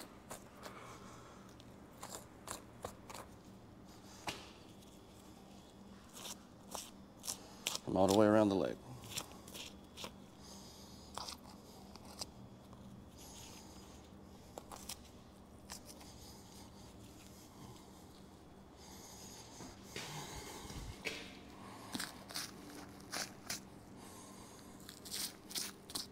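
A knife cutting and deer hide being pulled away from the muscle during skinning: faint, scattered small crackles, tearing and scrapes. A short grunt-like vocal sound comes about eight seconds in.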